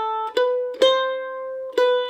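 F-style mandolin picked slowly, single notes one at a time: three picked notes, the middle one left ringing for about a second.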